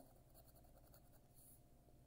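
Faint scratching of a coin rubbing the silver coating off a paper scratch-off lottery ticket, in short irregular strokes.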